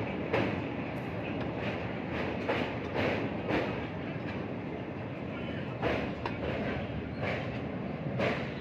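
Train crossing a steel truss bridge, heard from aboard: a steady running noise with sharp, unevenly spaced wheel clacks over the rail joints.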